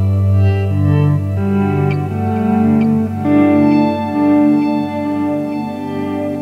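Squier Starcaster electric guitar played through a Boss DD-20 delay: picked notes repeat and pile up into overlapping sustained tones over a held low note, the older echoes fading under the newer ones.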